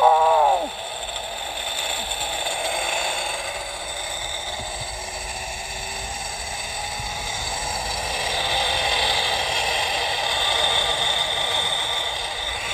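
Zipline trolley pulleys running along a steel cable, a steady whirring hiss with a faint high whine, mixed with wind rushing past. It grows louder towards the end as the ride gathers speed. It opens with a short "oh" from the rider.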